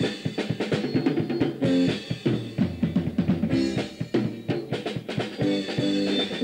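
Live rock band playing, with busy drum-kit playing (bass drum, snare and rim hits) to the fore over sustained electric guitar and bass notes.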